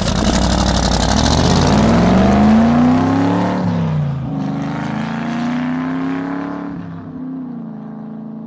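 Car engine accelerating hard as a logo sound effect. It opens with a rushing whoosh, then the engine note climbs, drops about four seconds in as if at a gear change, climbs again and fades near the end.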